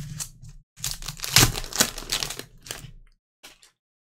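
Foil trading-card pack torn open and crinkled by gloved hands, with the cards slid out: about three seconds of crackling and rustling with many small clicks, then two faint ticks.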